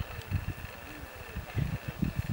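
Wind buffeting the camera microphone in irregular low rumbling gusts, over a faint outdoor background hiss.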